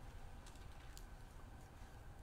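Near silence: a few faint, scattered light clicks over a low, steady room hum.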